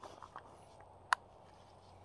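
One sharp, short click about a second in, over quiet outdoor background, with a few faint soft taps near the start.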